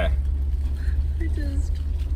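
Steady low rumble of a car heard from inside its cabin, unchanging throughout, with a faint voice murmuring briefly in the middle.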